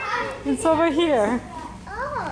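A toddler's high-pitched voice in short wordless phrases with rising and falling pitch.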